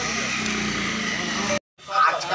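A vehicle engine idling steadily under the murmur of people's voices, cut off suddenly near the end; a man's voice starts just after.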